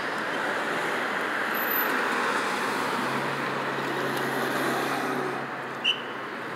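Road traffic: cars passing, with tyre and engine noise swelling to its loudest about two seconds in, then a steady low engine hum through the second half.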